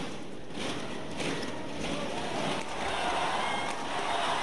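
Steady arena crowd noise through a fast badminton doubles rally, with several sharp racket strikes on the shuttlecock roughly a second apart.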